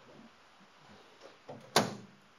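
A soft knock, then a single sharp, loud clunk from the car's body near the end, typical of a car door being shut or the hood latch being worked.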